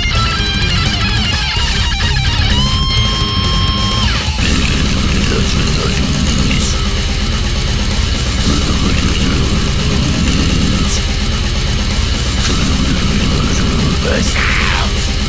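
Death metal music: a distorted electric guitar lead line that ends on a held note about four seconds in, after which heavy rhythm guitars and fast drums carry on.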